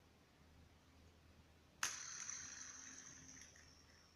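A sharp flick about two seconds in sets a Rubik's cube core, used as a homemade plastic fidget spinner, spinning; a thin high whir follows and slowly fades as it slows down.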